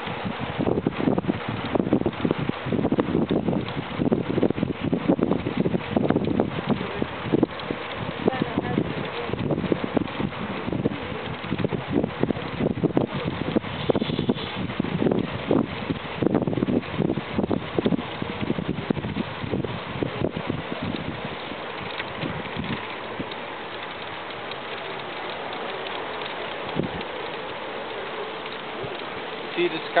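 Wind buffeting the microphone of a camera carried on a moving bicycle, coming in irregular gusty rushes and settling into a steadier, softer rush in the last several seconds.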